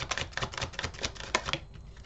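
Oversized tarot cards being handled: a quick run of light clicks and snaps as cards are drawn off the deck and laid on the table. It dies away after about a second and a half.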